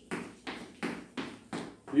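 Rhythmic soft thuds of a person doing butt kicks in place, feet landing and hands slapping the heels, about three a second.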